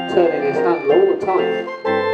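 A small hand-cranked barrel organ playing a tune in steady sustained notes, its crank turned by a mechanical monkey.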